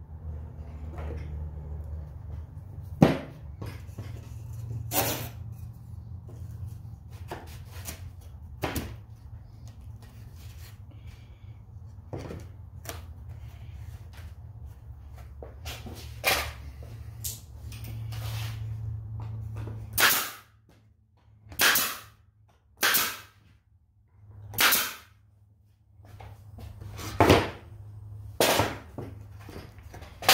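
Staple gun driving staples into a wooden hive frame: about a dozen sharp shots spaced one to a few seconds apart, over a low steady hum that stops about two-thirds of the way through.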